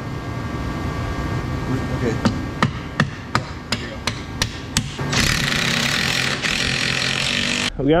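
Rubber mallet striking an orange C&A Pro snowmobile ski as it is fitted to the spindle: about eight quick blows, roughly three a second. A steady hiss follows for a couple of seconds and cuts off near the end.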